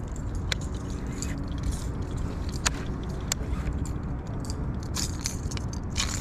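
Baitcasting reel and fishing tackle being handled while a small yellow perch is brought in: scattered sharp clicks and small rattles over a steady low rushing background.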